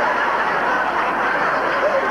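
Studio audience laughing: a steady wash of many people's laughter.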